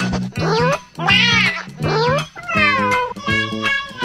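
Meowing over a music track with a repeating bass line: about four long meows, each sliding in pitch.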